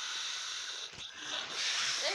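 Steady hissing rush of air blown out through the nose into a latex balloon as it inflates, broken briefly about a second in, then resuming.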